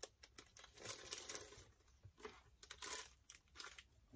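Clear plastic sleeve crinkling and tearing as it is pulled open by hand, in faint, short irregular bursts, the strongest about a second in and again near three seconds.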